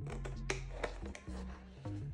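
Background music with a steady bass line, and over it about three crisp snips of sharp scissors cutting through heavy watercolor paper. The loudest snip comes about half a second in.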